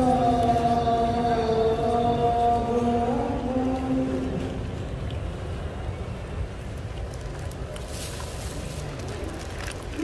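A man's voice chanting long held notes that bend slowly in pitch, ending about four seconds in and leaving a steady low background noise.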